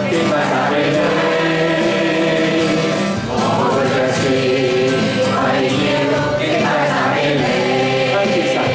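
A group sings a Chinese worship song, led by a man's voice, with an acoustic guitar strummed along.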